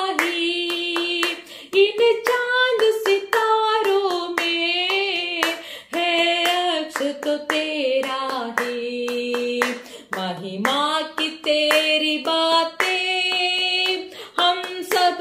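A woman singing a worship song solo, with no instruments, holding and sliding between long notes. She claps her hands in a steady rhythm as she sings.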